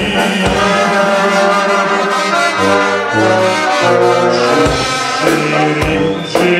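Balkan brass band playing live: trumpet and horn sound a sustained brass passage over accordion and drums. A low brass line steps between notes in the middle.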